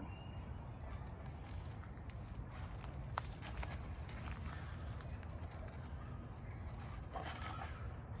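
Quiet outdoor ambience with a steady low background, a faint high tone early on, and a few small clicks of a tiny battery connector being handled and plugged into the plane's receiver, the clearest about three seconds in.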